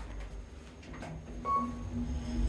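KONE MonoSpace DX lift car travelling down one floor, a low steady hum with a few faint clicks. A short, steady beep sounds about one and a half seconds in.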